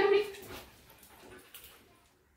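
A dog gives a short, loud whine right at the start, falling in pitch, followed by softer fading sounds.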